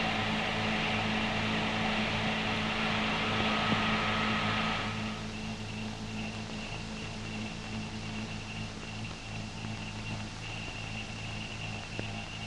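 Steady mains hum and hiss from an old film soundtrack, with no distinct sounds over it. The hiss drops noticeably about five seconds in, and a faint high whine stays on throughout.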